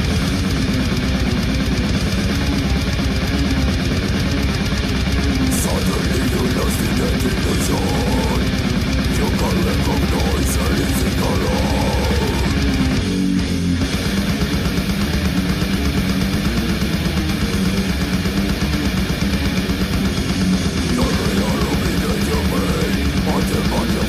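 Brutal death metal: heavily distorted electric guitars and drums in a dense, loud, unbroken mix. The band thins out briefly just past halfway, then comes back in.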